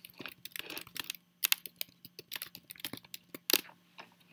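Typing on a computer keyboard: a quick, irregular run of key clicks, the loudest strike about three and a half seconds in.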